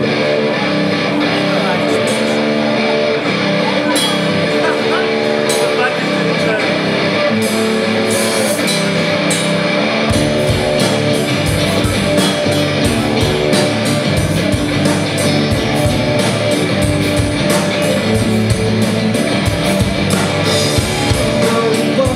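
Live rock band playing an instrumental intro on electric guitars, bass and drums. About halfway through the bottom end fills out and a steady, fast cymbal beat drives the rest of the passage.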